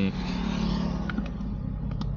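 Cabin noise of a Suzuki S-Presso cruising at highway speed: a steady low hum from its small 1.0-litre three-cylinder engine under road and tyre noise heard from inside the car.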